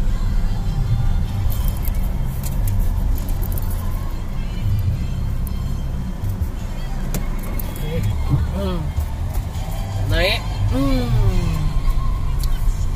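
Car engine and road rumble heard from inside the cabin while driving. A voice with music rises and falls over it in the last few seconds.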